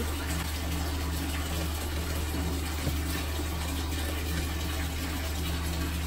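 Water running steadily from a tap into a bathtub, an even rushing with a low hum beneath it.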